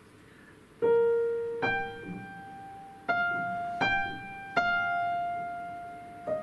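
Upright piano playing a short single-line melodic motive of five notes, the last one held and left to ring after a step down. The phrase is played to show an energetic and a dynamic crescendo at the same time.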